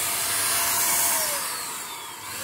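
Handheld electric paint spray gun running with a steady motor whir and spray hiss. Near the end its motor winds down, falling in pitch and getting quieter.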